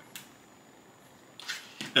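A single short click of a cut-paper shape being handled on the painting, then quiet room tone; a man says a couple of words near the end.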